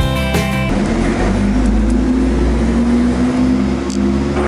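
Background guitar music cuts off under a second in, giving way to a city bus engine running as the bus passes, its note rising slightly partway through.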